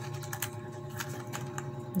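Light, irregular clicks and taps of fingers and nails handling a plastic phone-wallet case, about eight in two seconds.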